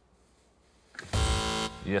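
A game-show contestant's buzzer sounding once about a second in: a loud, steady electronic tone lasting about half a second, signalling a player buzzing in to answer.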